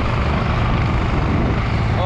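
Loud, steady wind noise buffeting the camera microphone while riding a bicycle, heaviest in the low end, with no breaks or distinct events.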